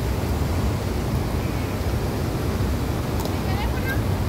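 Steady rush of river water spilling over a long concrete weir and running through a shallow rocky riverbed, with wind on the microphone adding a low rumble. Faint voices come in near the end.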